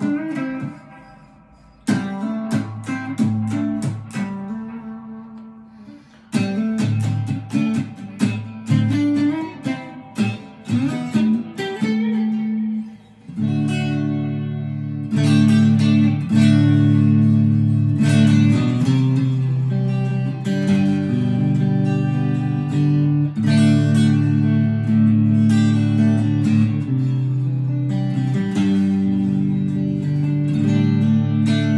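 Firefly FFST relic Strat-style electric guitar played on a clean amplified tone: picked chords and notes left to ring out and fade during the first thirteen seconds or so, then steady, continuous strummed chords.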